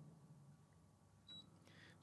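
Near silence: room tone, with one faint, short, high-pitched blip just over a second in.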